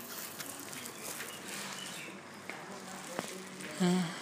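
Faint background voices and outdoor ambient noise with a few light clicks, then a short, loud voice just before the end.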